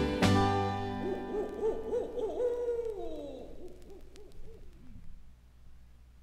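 The record's closing chord rings out and fades, overlaid by a wavering, owl-like hooting sound effect that slides down in pitch and dies away about five seconds in.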